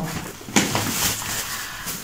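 Plastic shopping bag rustling as someone rummages in it, with a sharper crinkle about half a second in and another near the end.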